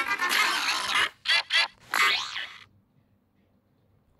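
Edited audio clip playing back from a multitrack app: busy music, then two short pitched blips and a cartoonish bending, falling tone. It cuts off suddenly a little under three seconds in, leaving near silence.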